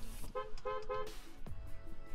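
Car horn sounding three short honks in quick succession, about half a second to a second in, over background music.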